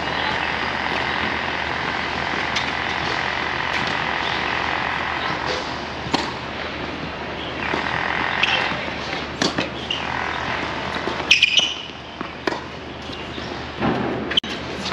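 A steady background hum of city noise. From about six seconds in it is broken by a few sharp, separate knocks, typical of a tennis ball bouncing and being struck with a racket, the loudest a little after eleven seconds.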